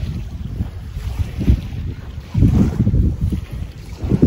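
Wind buffeting the phone's microphone in irregular low gusts, strongest about two and a half seconds in.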